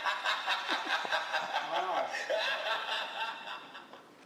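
People laughing in quick, rhythmic bursts that die away near the end.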